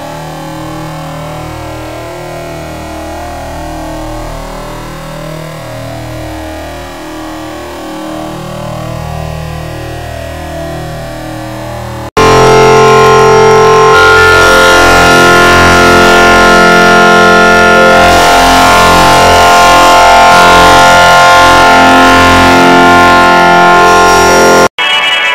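Heavily electronically processed, garbled audio: a choppy, warbling layer at moderate level, then about halfway an abrupt jump to a very loud, distorted wall of sustained tones and noise.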